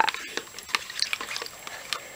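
Light splashing and stirring of shallow water in a plastic tub as a hand pushes a soaked cardboard toilet-roll tube around in it, with scattered small ticks and taps.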